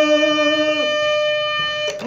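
Harmonium holding a steady note, with a sung note held over it that falls away about a second in.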